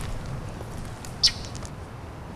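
Quiet outdoor background with a single short, high-pitched chirp a little past a second in, followed by a few faint ticks.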